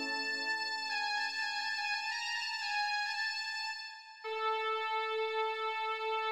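Viscount Chorale 8 digital organ playing a slow, sustained passage in D minor: held notes in the upper register with the lower voices fading out. A short break about four seconds in is followed by a new held chord.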